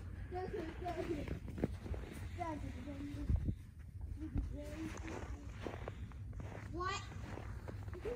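Footsteps walking through snow, irregular soft steps, with children's voices heard faintly in the background.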